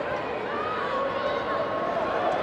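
Football stadium ambience during live play: a steady background of crowd noise with voices calling out.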